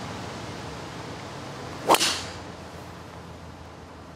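A golf driver striking a teed-up ball on a full tee shot: one sharp crack about two seconds in, with a short ringing tail.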